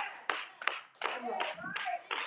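Hands clapping in a steady rhythm, about three claps a second, with a voice calling out briefly near the end.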